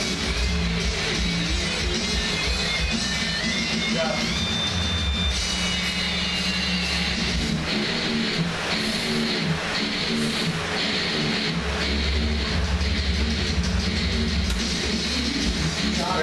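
Rock music with guitar and a voice over it, playing steadily.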